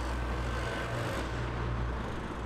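Outdoor urban ambience: a low, steady rumble of road traffic with a faint even hiss.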